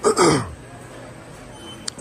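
A man clears his throat once, a short sound that falls in pitch, at the very start; then only the low background hum of the store.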